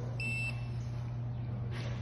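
Autel MaxiTPMS TBE200E laser tire tread scanner giving a single short, high-pitched beep as it scans the tire tread, over a steady low hum.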